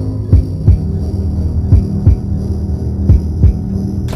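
Suspense soundtrack: a steady low drone with a heartbeat-like double thump about every second and a half, three pairs in all.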